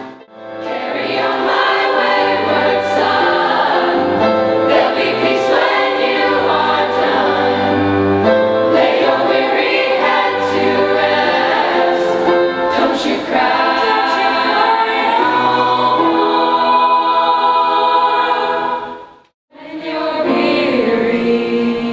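Youth choir singing a song together in harmony, over a low bass accompaniment. The sound fades in at the start and drops out for a moment near the end.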